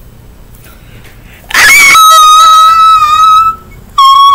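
A child's voice holding one long, high-pitched note for about two seconds, starting about a second and a half in, like a drawn-out squeal or sung 'ooh'.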